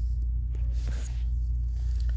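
A steady low rumble, with a few faint scrapes about a second in.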